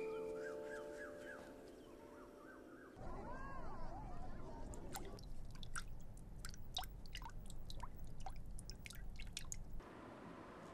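Quiet ambience. Background music fades out, then faint bird chirps and calls are heard. From about halfway, irregular drips and plinks of water come from a goldfish tank.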